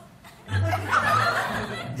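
A group of people laughing and chuckling together, starting about half a second in.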